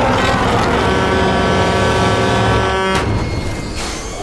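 A loud, steady, horn-like blare over a low rumble. It cuts off sharply about three seconds in, and a second sharp hit follows near the end.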